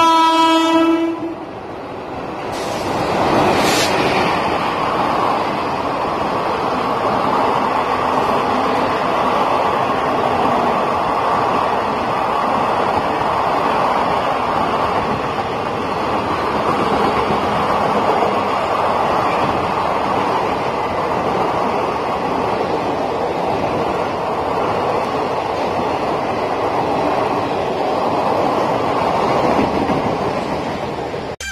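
A WAP4 electric locomotive sounds one horn blast of about a second as it approaches. The train then runs through the platform at speed: the locomotive passes in a loud surge three or four seconds in, and the coaches' wheels follow as a steady rushing clatter on the rails.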